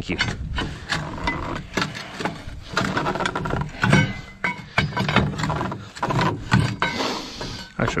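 Flatbed trailer strap winch being worked with a steel winch bar to tighten a load strap: irregular clicks, knocks and scraping of the bar and the winch ratchet.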